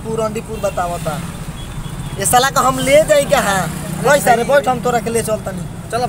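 People's voices calling and shouting, with a steady low hum underneath.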